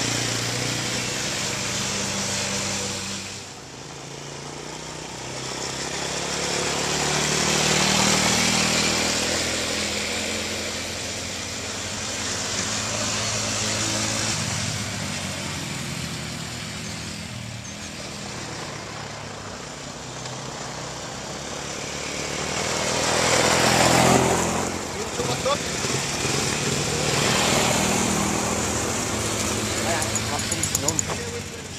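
Small quad bike engines running and revving on a dirt track, rising and falling in pitch. They swell louder as a bike passes close, about eight seconds in and again near the end.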